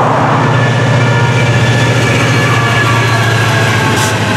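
Florida East Coast diesel-electric freight locomotive passing close by at low speed. Its diesel engine gives a loud, steady low drone, and a thin high whine sits above it.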